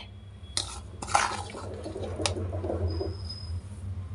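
Metal spoon scraping and tapping against an iron bowl as ground powder is tipped in, with one sharp clink about two seconds in.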